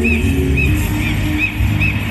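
Backing music over a sound system: steady low notes with a short high chirping call repeating about twice a second.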